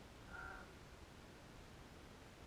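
Near silence over a low rumble, with one short, faint call about half a second in, like a crow's caw.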